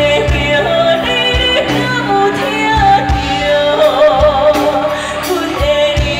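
A woman singing a song live into a hand-held microphone over backing music with a drum beat, with a held note that wavers in vibrato about four seconds in.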